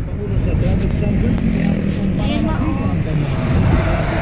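Steady road and engine rumble inside a moving car's cabin, with voices talking over it.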